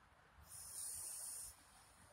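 A soft hiss, about a second long, that starts and stops suddenly.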